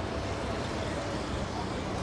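Steady outdoor background noise, a low, even rumble like distant road traffic, with no distinct events.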